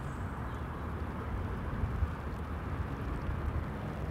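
Steady outdoor background noise: an even rush with a low rumble underneath, with no distinct event.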